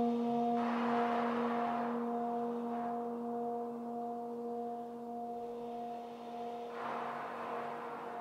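A low French horn note held long and slowly fading under heavy electronic reverb, meant to imitate a humpback whale's call booming around a bay. Two rushes of breath are blown through the horn, about half a second in and again near the end.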